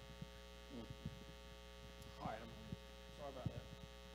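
Steady electrical mains hum from the sound system, with a few faint, brief knocks and rustles.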